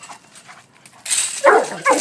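Central Asian Shepherd dog (Alabai) giving two short, loud barks in the last half second, with a rush of scuffling noise just before them.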